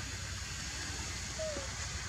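Steady outdoor background noise with a low rumble, and one short squeak falling in pitch about one and a half seconds in.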